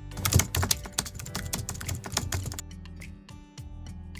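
Keyboard-typing sound effect: a rapid run of clicks lasting about two and a half seconds, then stopping, over steady background music.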